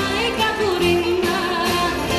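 Live band playing a Greek popular song with a singer carrying a wavering melody line over sustained instrumental chords.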